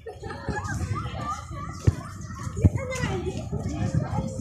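Children's voices, chattering and calling over one another as they play, with two sharp thumps a little under a second apart in the middle.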